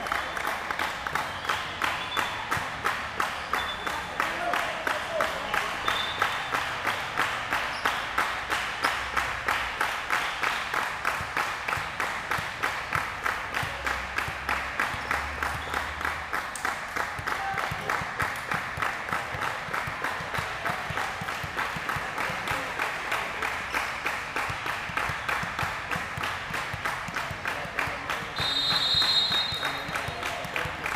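Volleyball spectators in a large gym clapping in a steady rhythm, about two to three claps a second, keeping it up without a break. Near the end a referee's whistle blows once briefly, the signal for the server to serve.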